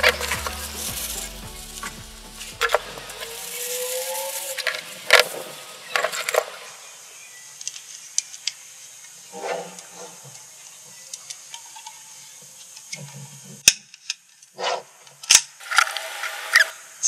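Tissue paper rustling and crinkling as headlight projector parts are unwrapped, followed by scattered light clicks and taps of the small parts being handled and set down on a table. Background music plays over the first few seconds and stops.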